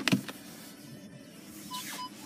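Volkswagen park-assist warning beeping: short, even beeps about three a second, starting near the end, as the car is put in reverse and the screen switches to the rear camera. A single sharp knock comes right at the start.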